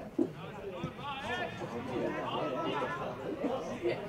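Several overlapping voices talking and calling out at once, with a short knock about a fifth of a second in and another near the end.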